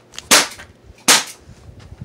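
Gas airsoft pistol with a silencer fitted firing two sharp shots, a little under a second apart.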